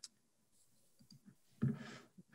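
Quiet room with a few faint computer mouse clicks while a screen share is being switched. Near the end comes a short, low breath-like voice sound.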